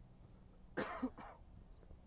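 A man's short cough about a second in, in two quick pushes.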